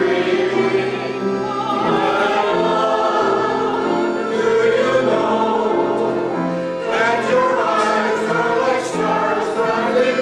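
A choir singing in long held notes.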